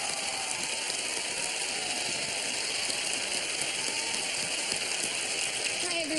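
Studio audience applauding, a steady wash of clapping.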